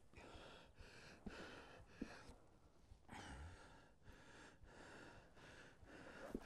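Faint breathing, a series of breaths about one a second, with a short pause between two and three seconds in.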